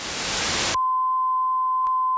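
Loud TV static hiss that cuts off abruptly about three-quarters of a second in. It gives way to a steady, single-pitched test-tone beep of the kind that plays with colour bars to signal a broadcast interrupted by technical difficulties.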